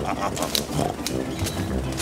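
Cartoon jungle animal calls over background music.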